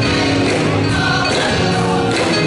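Church choir singing gospel music.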